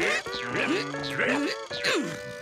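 Cartoon background music with held tones, overlaid by a quick run of short sliding-pitch sound effects, about two a second.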